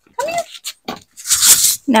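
A cat's short meow just after the start, followed by a brief burst of rustling noise.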